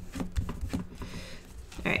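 Origami paper being creased and handled by fingers on a desk mat: scattered light crinkles and clicks.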